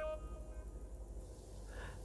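Faint background music, a few held notes dying away in the first half second, leaving only a low steady hum.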